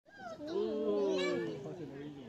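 Several people's voices overlapping at once, one of them high and drawn out, with no words clear.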